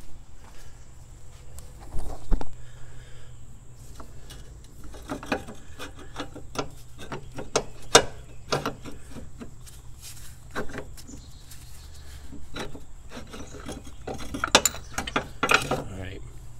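Irregular metal clunks, knocks and scraping as a polyurethane motor mount and its steel bracket are pushed and wiggled by hand into place on the engine. The sharpest knocks come about two seconds in, near the middle and near the end.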